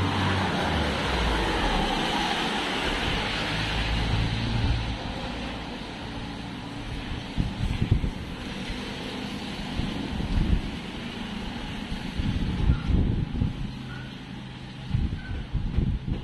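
Outdoor noise: a road vehicle passing for the first few seconds, then irregular gusts of wind buffeting the phone's microphone.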